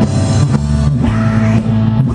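Live rock band playing loud amplified music: electric guitar over a steady low bass line, with a singer's voice coming in during the second half.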